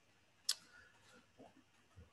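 Near-silent pause with a single sharp click about half a second in.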